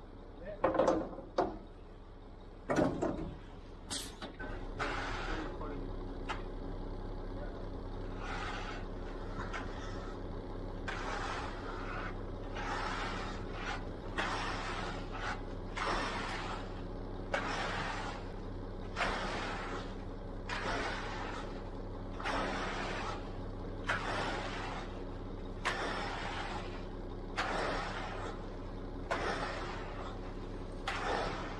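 Steady engine hum from the concrete delivery truck or conveyor, under rhythmic scraping strokes about once a second as hand tools spread and smooth wet concrete; a few loud short sounds come in the first few seconds.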